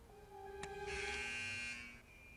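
An electronic buzzer-like tone from the episode's soundtrack. It sounds over a low held note, starts with a click, swells in about a second in and lasts nearly a second before it fades.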